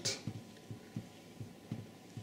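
Water drops falling from the charged water streams of a falling-water electrostatic generator, landing as soft, low, irregular taps about three to four a second.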